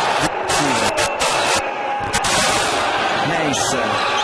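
Basketball arena crowd noise, a steady loud hubbub with a few brief surges in the first couple of seconds, mixed with fragments of a commentator's voice.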